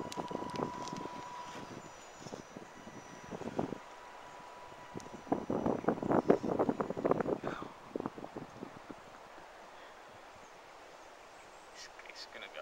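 Axial SCX10 Deadbolt RC crawler's tyres clawing up a bank of loose dirt and stones: a run of crackling and crunching, loudest between about five and eight seconds in, fading to quiet near the end.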